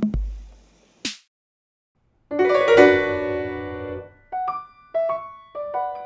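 A last drum-machine hit with a deep bass tail and a short swish, then a second of silence; then a full grand piano chord rings out and decays, and single piano notes begin a melody about two seconds later.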